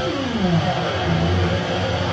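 Live rock band playing, led by electric guitar over bass. In the first half second a guitar note slides down in pitch before the band settles back into the riff.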